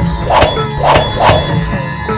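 Swords clashing: three sharp metallic clangs within about a second, each ringing briefly, over background music.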